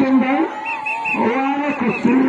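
A man's voice in long, drawn-out calls whose pitch wavers up and down.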